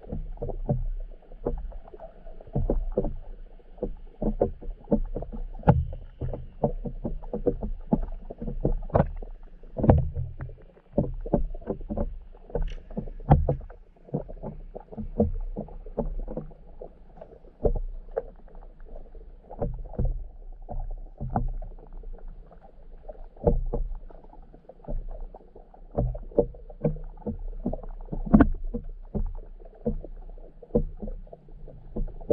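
Muffled sound through a submerged camera's waterproof housing: a low steady rumble with frequent, irregular dull knocks and sloshing of water.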